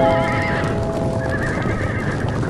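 A herd of horses galloping past, a dense rumble of hooves, with horses whinnying near the start and again later, over background music.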